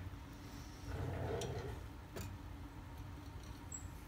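Faint handling noise as hands take hold of a metal ring stand and balance clamp: a soft rustle about a second in and two light clicks.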